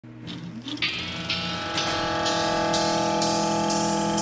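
Electronic music build-up: a sustained synth chord swells in level while a hissing noise sweep steps upward about twice a second.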